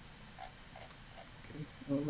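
A few faint, short computer mouse clicks, about one every half second, as a web page is scrolled. A man's voice starts just before the end.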